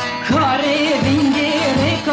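Kurdish song: a man's voice singing over a band with a steady low beat. The voice comes in just after the start.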